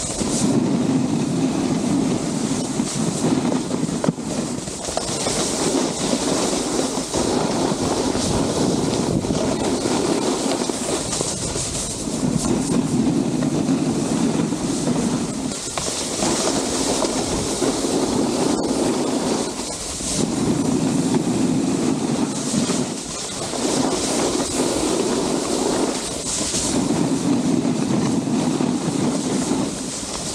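Snowboard scraping and rumbling over firm groomed snow through a series of linked turns. The low rumbling scrape swells and eases every three to four seconds as the board changes edge, alternating with a hissier slide.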